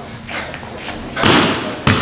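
Thuds of a martial artist's footwork on a wooden floor during a kung fu form: a lighter one about a third of a second in, a heavier, longer one about a second and a quarter in, then a sharp thud near the end.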